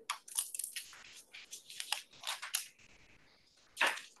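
An irregular run of short scratching and rustling noises, with a quieter stretch near the end and a louder scrape just before the close.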